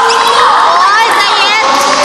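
Children's voices shouting and cheering, several high voices overlapping, their pitch sliding up and down.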